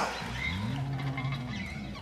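Church band music dying away: a low held note that swells, holds and fades out.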